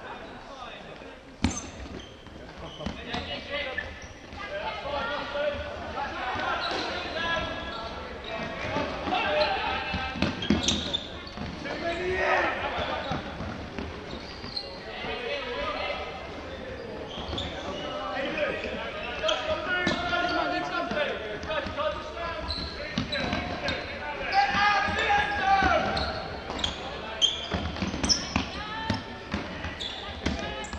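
Players' shouts and calls echoing in a large sports hall during indoor ultimate frisbee play, with footfalls and short sharp knocks on the wooden court.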